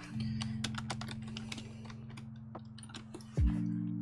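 Typing on a computer keyboard: a quick, irregular run of key clicks, over soft background music. A short low thump comes a little over three seconds in.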